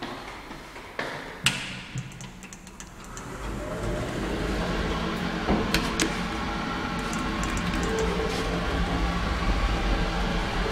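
Kidemet 2000 traction elevator: a few sharp clicks and a knock in the first two seconds, then from about three and a half seconds a steady low rumble and hum that builds as the doors close and the car travels, with a couple of sharp clicks around six seconds.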